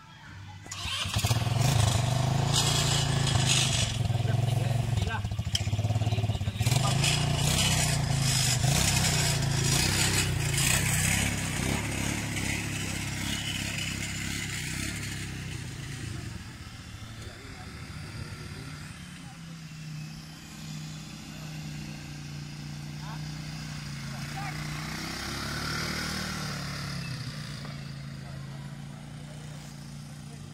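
Small ATV (quad bike) engine running as it is ridden around a grass track. It is loudest over the first ten seconds or so, then quieter, and its pitch rises and falls briefly near the end.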